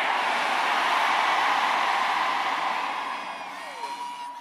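A large church congregation shouting together in response to the call for the loudest amen. The mass of voices holds steady, then dies away over the last second and a half.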